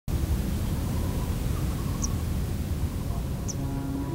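Outdoor ambience: a steady low rumble with a hiss over it, and two short high chirps, about two seconds in and again near the end.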